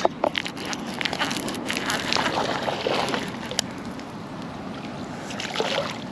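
A small hooked fish splashing at the water's surface as it is reeled in to the bank. A run of sharp clicks and rustles fills the first few seconds.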